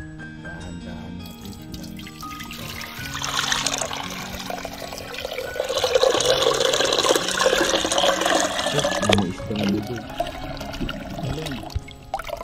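Water poured from a plastic tub into a small glass aquarium, splashing and bubbling in the tank. It builds from about three seconds in, is loudest in the middle and trails off near the end, over background music.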